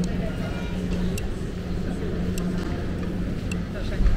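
Busy airport terminal concourse ambience: a steady low hum under indistinct voices of passing travellers, with a few sharp clicks scattered through.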